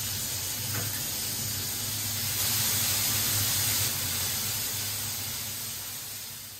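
Water pouring from a gooseneck tub faucet into an empty freestanding bathtub: a steady stream of splashing hiss that slowly fades near the end.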